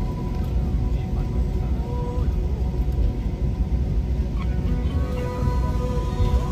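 Instrumental background music with long held, slowly gliding tones, over the steady low rumble of an airliner's engines heard inside the cabin.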